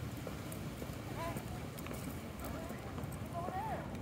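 Footsteps on brick paving, a string of short clicks, with faint voices in the background.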